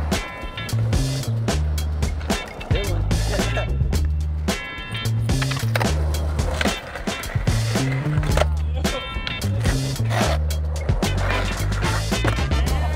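Music with a repeating bass line, over a skateboard rolling on street pavement with sharp knocks of the board on tricks.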